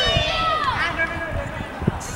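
Children shouting and calling out over one another in high voices during a ball game, with a single sharp thud near the end.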